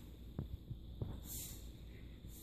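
A dog rolling and wriggling on carpet against a towel: two soft thumps and a brief rustle over a faint low hum.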